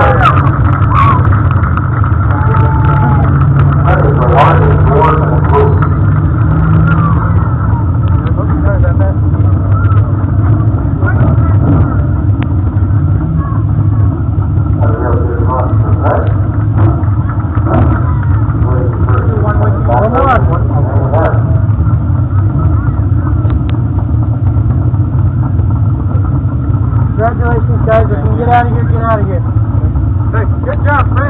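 Dwarf race car engine idling in a steady low drone, with indistinct talking coming and going over it.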